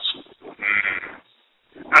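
A single brief animal call, about half a second long, near the middle, in a pause between stretches of talk.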